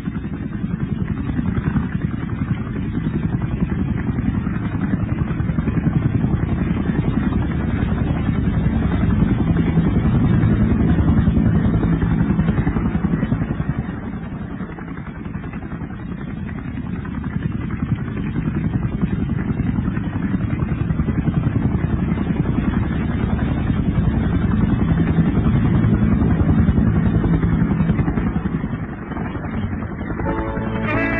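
Loud, low, engine-like rumble that swells and eases twice.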